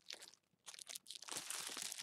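Thin plastic bread bag crinkling as it is handled, in quick irregular crackles that start about half a second in and grow denser near the end.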